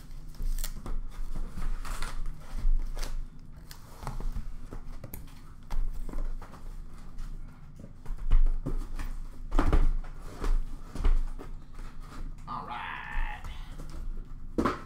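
Cardboard hockey card hobby boxes being lifted out of a cardboard shipping case and stacked: irregular knocks and thuds, with cardboard sliding and rustling. There is a short scraping rustle near the end.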